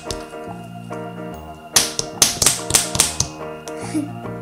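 Background music with a quick run of about seven sharp taps about two seconds in: a small plastic toy figure tapped against a tabletop.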